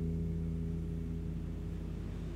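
Acoustic guitar's final chord ringing out, its low strings sustaining and slowly dying away after the last strum.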